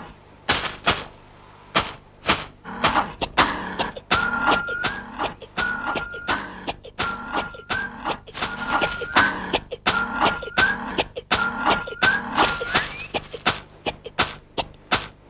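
Animated-film sound effects: sharp, irregular knocks and clacks that grow denser and faster. From about four seconds in, a short pitched cry that rises at its end repeats about every second and a half, seven times in all.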